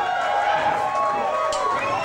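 Several voices shouting and cheering at once in a loud club crowd, with no band playing.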